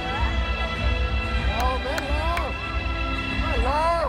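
Stadium public-address system playing music with a heavy bass and a voice sliding up and down over it, with a few sharp clicks about halfway through; the sound stops abruptly at the end.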